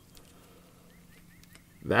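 Quiet background with a few faint short high chirps about a second in, then a man's voice starts near the end.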